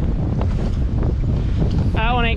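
Strong wind buffeting the microphone: a steady, heavy low rumble.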